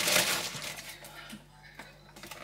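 Clear plastic grocery bag rustling and crinkling as packs are pulled out of it, loudest in the first half second and then dying away to a few faint clicks.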